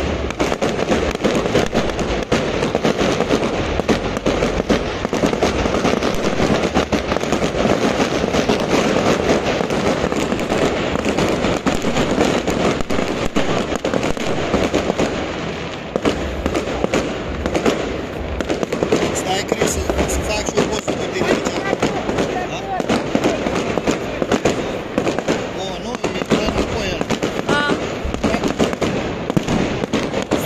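Fireworks going off overhead in a rapid, unbroken barrage of crackling and bangs from many bursting shells and firecrackers.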